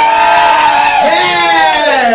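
A performer's long, drawn-out shout into a microphone through the PA, held on one high pitch for nearly two seconds with a brief break about halfway. It is a hype call to rouse the audience.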